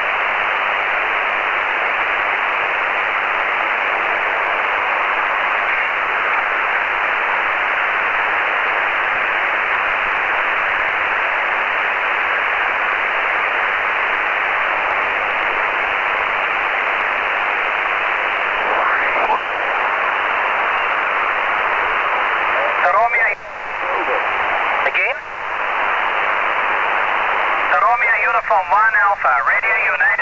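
Shortwave amateur radio receiver on SSB, giving a steady hiss of band noise squeezed into the narrow voice passband: the calling station has fallen silent. Faint, wavering sideband voices drift through in the last third, with a couple of brief dips in the hiss. A distorted, warbling SSB voice comes in near the end.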